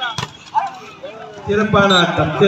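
A single sharp smack of a volleyball being spiked, just after the start. From about one and a half seconds in, a burst of loud shouting from several voices.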